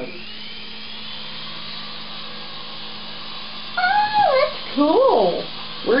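Toy remote-control Apache helicopter's small electric rotor motors spinning up with a rising whine, then running with a steady high whine as it lifts off from a hand. About four seconds in, a voice breaks in with loud swooping exclamations.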